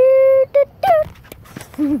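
A dog whining: one high, steady whimper lasting about half a second, then two brief ones, the last bending up and down.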